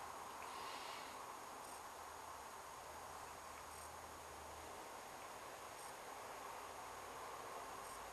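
Quiet background hiss with a faint, high-pitched chirp repeating about every two seconds.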